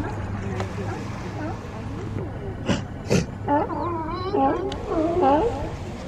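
Sea lions calling: two short, sharp barks a little under halfway through, then a run of wavering calls that rise and fall in pitch.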